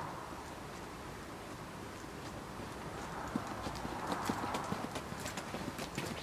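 Footsteps of a person and a trotting dog on an asphalt road, faint at first and growing louder and more frequent over the last few seconds as they come close.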